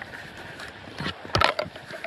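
A Work Tuff Gear Campo knife is drawn from its Kydex taco-style sheath. A few clicks, then a sharper snap about one and a half seconds in as the blade comes free.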